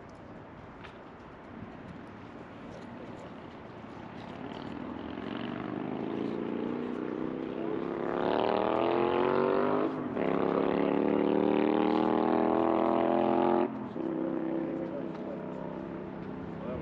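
A vehicle's engine revving up as it accelerates, rising in pitch, dropping briefly at a gear change about ten seconds in, climbing again, then falling away suddenly near the end.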